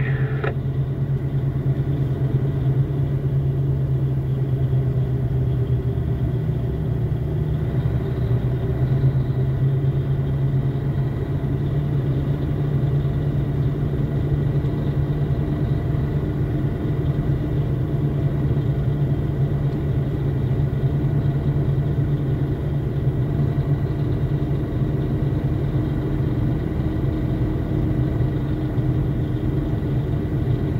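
Vehicle engine running steadily under way, a constant low drone heard from inside the cab.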